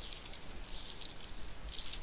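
Faint, uneven rustling and crackling of thin Bible pages being turned while a passage is looked up.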